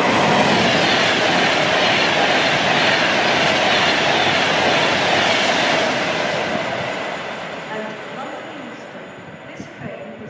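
Avanti West Coast Class 390 Pendolino electric train passing through the station at speed: a loud, steady rush of wheels on rail and air that fades away after about six seconds as the train draws off.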